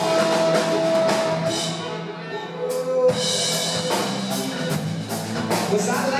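Live rock band playing an instrumental passage: drum kit, electric guitars, bass guitar and saxophone, with long held notes over a steady beat. The band drops back briefly about two seconds in, then comes back with a loud drum hit.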